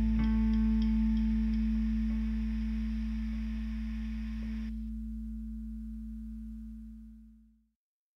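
The closing chord of a rock instrumental on effects-laden electric guitar, with a low bass note, ringing out and slowly fading. The higher notes drop away a little past halfway, and the remaining low tone dies out shortly before the end.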